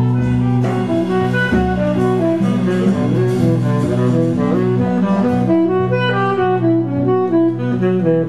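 Live jazz band playing: a saxophone runs a melody of quick short notes over a steady low drone from bass and guitar, with drums.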